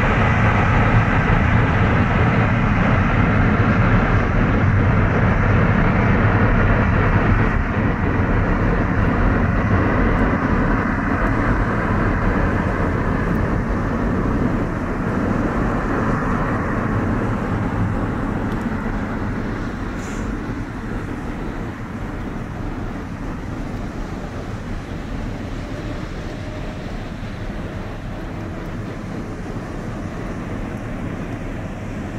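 Jet aircraft engines at takeoff power: a steady rumble with a faint whine. Loud at first, it fades away over the middle of the stretch as the aircraft draws off.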